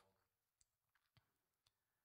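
Near silence, with a few faint short clicks.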